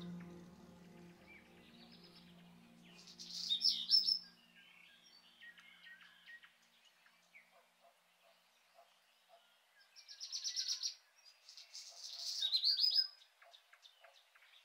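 Wild songbirds singing. A quick run of high chirps ending in a falling trill comes about three seconds in, and a longer run of rapid chirps and trills follows from about ten seconds to near the end.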